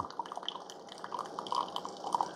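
Freshly brewed coffee streaming from a Keurig K-Express spout into a ceramic mug, a faint, irregular trickle and drip.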